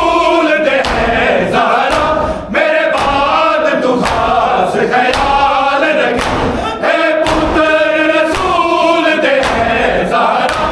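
A group of men chanting a nauha, a mourning lament, together in unison, over a steady beat of open-hand slaps on bare chests (matam).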